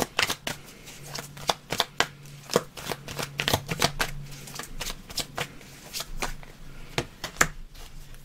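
A tarot deck being shuffled by hand: a long run of sharp card clicks and flicks at an uneven pace.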